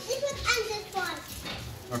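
A toddler's voice: a few short, high-pitched vocal sounds without clear words.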